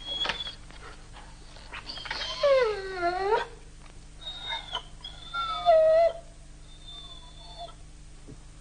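A German Shepherd dog whining: a long whine about two seconds in that falls and then rises in pitch, followed by shorter whines in the middle and a faint one near the end.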